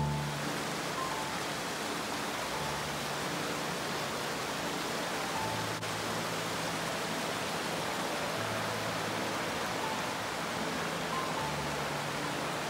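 A fast-flowing river in flood rushing steadily over stones and debris, with a small waterfall pouring into it. Soft, slow piano-like background music plays faintly underneath.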